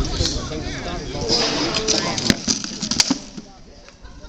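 Several sharp cracks of combat weapons striking shields and armour during a sparring bout, the loudest about three seconds in.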